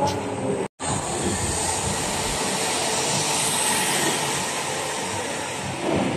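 Go-karts running on an indoor track: a steady, noisy whir that echoes in the hall. It cuts out for a moment less than a second in, then carries on.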